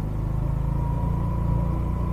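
Rusi Gala 125 scooter's engine running steadily while riding at low speed, a low hum with a faint thin whine above it in the middle.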